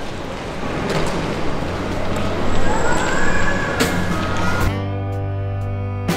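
Steady background noise without a clear source, then jazz background music with saxophone begins near the end.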